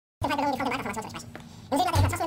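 A man speaking German, his voice pitched up high and squeaky.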